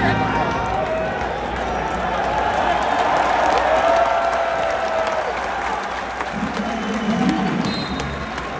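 Basketball arena crowd: a steady hubbub of spectators' chatter with scattered clapping, and a louder voice rising over it near the end.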